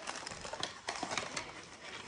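Irregular small clicks and rustles of items being handled close to the microphone.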